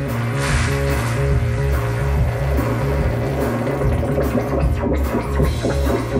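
Live electronic music: a looping synthesizer bass line that steps between low notes, with cymbal and drum hits over it.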